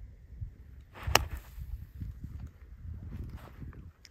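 A pitching wedge strikes a golf ball out of a black volcanic-sand bunker: one sharp click about a second in, over a low rumble.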